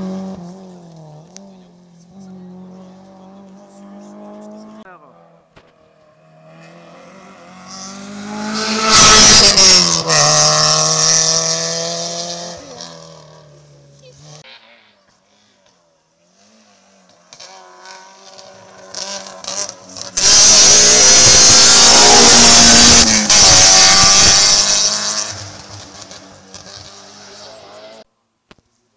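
Rally cars racing past one after another on a tarmac special stage, engines revving hard with the pitch rising and falling through the gears. A loud close pass comes about nine seconds in, and a longer, louder one from about twenty to twenty-five seconds.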